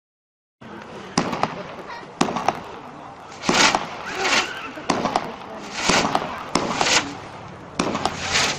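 Consumer fireworks cake (Whirlwind of Caribbean Sea) firing shots: sharp reports in the first couple of seconds, then several longer noisy bursts about a third of a second each from about three and a half seconds on, mixed with further sharp pops.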